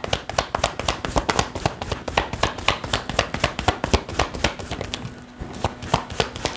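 A tarot deck being shuffled overhand, cards clicking and slapping against each other in a fast patter, with a brief pause about five seconds in.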